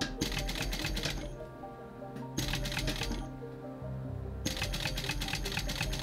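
Industrial sewing machine stitching through cowhide leather in three short runs, a rapid ticking of needle strokes: one run ends about a second in, a brief one comes mid-way, and a longer one starts near the end. Background music plays underneath.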